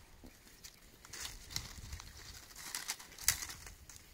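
Dry branches rustling and small twigs crackling as a dead sapling is bent and stripped by hand, in a few short bursts, the loudest a little after three seconds in.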